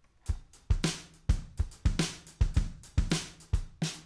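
Software drum kit, MainStage's 'Detroit Garage' patch, playing a steady beat of kick drum, snare and cymbals.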